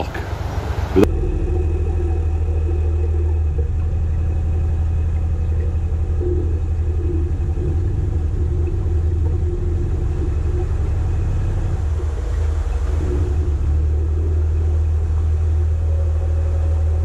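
Narrowboat engine running steadily at low revs, a deep even rumble, starting at a cut about a second in.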